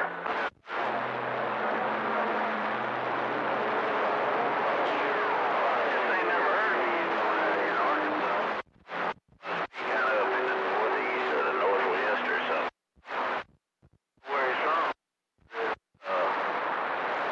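CB radio receiver on channel 28 giving out a continuous hiss of static, with faint steady and slowly falling heterodyne whistles and garbled signals in it. Near the end it cuts to silence several times as the squelch closes and reopens between transmissions.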